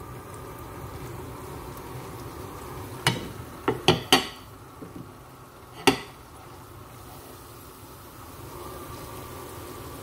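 Vegetable stock bubbling steadily in a cooking pot on the stove. A few sharp clinks of kitchenware against the pot come in a cluster about three to four seconds in, and once more near six seconds.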